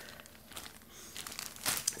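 Crinkling and rustling of a plastic-wrapped piece of embroidery fabric being handled, faint at first with a louder burst of crinkles near the end.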